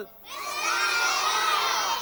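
A group of children shouting together in chorus, many voices in one long drawn-out call that starts about a third of a second in and holds steady. It is a reply to a greeting.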